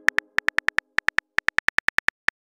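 Simulated phone keyboard key clicks as a text message is typed: a rapid, uneven run of short, bright clicks, about eight a second.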